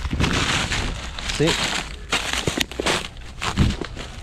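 Footsteps crunching and rustling through dry fallen leaves and twigs, in several bursts, with a sharp click about two and a half seconds in.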